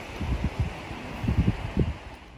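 Wind buffeting the microphone in uneven gusts, a low rumble rising and falling over a steady rush of wind.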